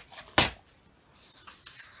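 Paper tearing against the notched edge of a plastic tearing ruler: one short, sharp rip about half a second in, ending a run of such rips, then faint paper handling.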